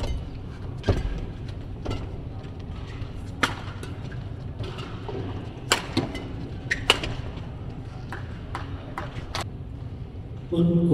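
Badminton rally: a string of sharp racket strikes on the shuttlecock, about one to two seconds apart, over the low hum of the hall.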